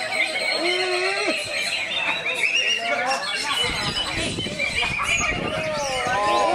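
Cucak ijo (green leafbird) singing among many other caged songbirds, a dense tangle of overlapping whistles, chirps and descending trills. A rougher, noisier patch comes in past the middle.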